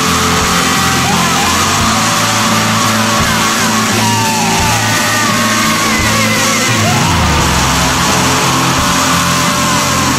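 Loud shoegaze rock music: a dense, steady wall of sound with wavering, gliding high notes over it.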